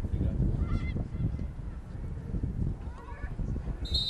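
Wind buffeting the microphone with a steady low rumble. A few faint, short distant calls are heard, about a second in and again near three seconds.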